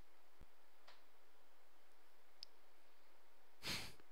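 Quiet room tone with a few faint clicks, then near the end a short breath out close to the microphone, a sigh.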